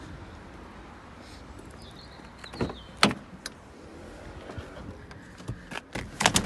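Door of a 2013 Citroën DS3 being opened: a short whine of the power window motor as the frameless window drops, then a sharp latch click about three seconds in, followed by a few lighter clicks near the end.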